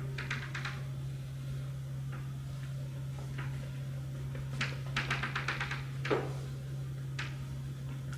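Chalk tapping and scratching on a blackboard as points and short lines are marked: a quick cluster of ticks just after the start, a longer rapid run of ticks about five seconds in, and scattered single taps. A steady low room hum lies underneath.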